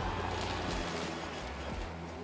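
EGO Select Cut 56-volt brushless electric push mower running steadily as it cuts grass, with an even whir and no engine note. Quiet compared with a gas mower.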